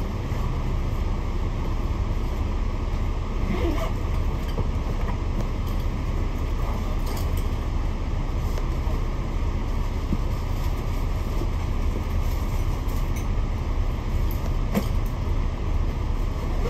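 Double-decker bus engine running with a steady low rumble, with a few faint clicks.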